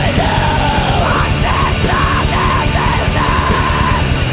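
Blackened punk song playing at full tilt: distorted guitars, bass and drums, with a woman's shouted vocal phrases held on top.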